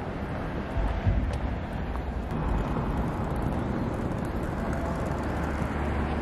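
Outdoor city ambience: a steady rumble of traffic with wind on the microphone.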